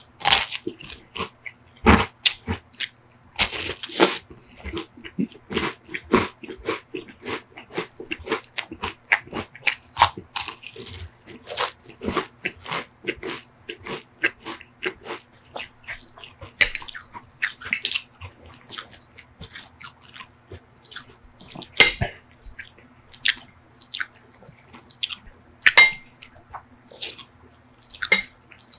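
Close-miked chewing of a crisp sugar cone: a steady run of dry, crackling crunches, two or three a second, with a few louder bites standing out.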